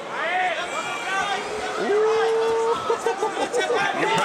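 Male commentators' voices exclaiming with wordless reactions, among them one long held exclamation about two seconds in.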